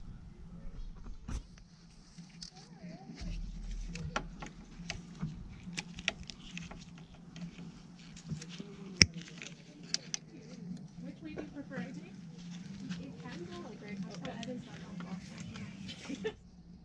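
Small metal clicks and scrapes of pliers working a steel cotter pin out of the castle nut on an ATV's lower ball joint, with one sharp click about nine seconds in, over a steady low hum.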